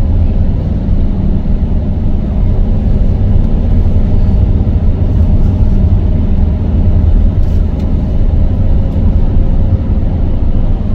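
Steady low rumble of tyre, engine and wind noise inside a car cruising at motorway speed.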